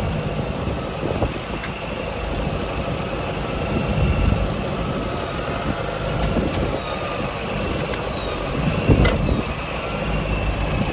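Tractor engine running steadily while a tractor-mounted McHale bale wrapper spins a round bale, stretching black plastic film around it. A short knock sounds near the end.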